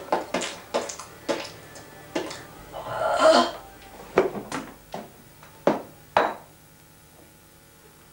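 A series of sharp knocks and clatters, coming fast in the first two seconds. A longer, noisier rasping sound follows about three seconds in, then a few single knocks, and then it goes quiet.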